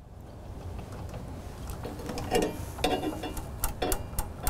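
Metal clicks and clacks of a cap frame being handled and fitted onto the cap driver of a Brother multi-needle embroidery machine, starting about halfway in, over a low steady hum.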